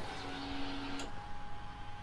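Faint steady electrical whine from the freshly powered AiM MXG dash display as it boots: a low tone, then a small click about a second in, after which a higher steady tone takes over.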